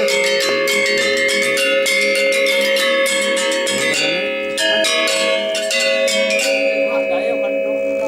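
Balinese gamelan accompaniment for wayang: bronze metallophones of the gender wayang type played in rapid interlocking strokes. The dense strokes thin out after about six and a half seconds, leaving the struck tones ringing on.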